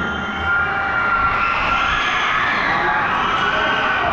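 A crowd cheering and shouting, swelling in the middle, just after the drum and lyre corps' music stops.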